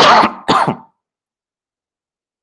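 A man coughing twice in quick succession into his hand, two short harsh bursts within the first second.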